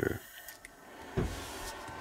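Faint handling of test leads and alligator clips while a heating pad is being connected: a small click about half a second in and a soft low knock about a second later, over quiet room noise.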